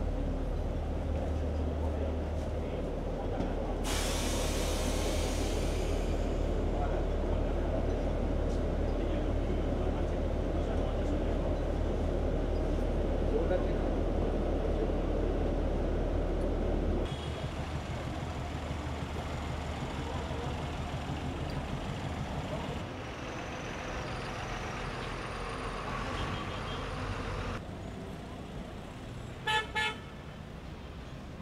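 City street traffic noise, a steady low rumble that changes abruptly several times, with a vehicle horn honking briefly near the end.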